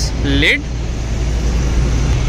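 Toyota Fortuner's 2.7-litre petrol four-cylinder engine idling with a steady low hum, heard with the bonnet open.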